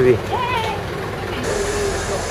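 Steady hum of a city bus engine and street traffic beside a tour bus at the kerb, with a short cheer at the start and another brief voice about half a second in.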